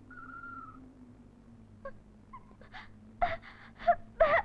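A woman whimpering and sobbing, in short broken cries that grow louder towards the end, over a faint steady hum.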